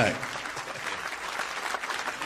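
Live audience applauding, many hands clapping at once.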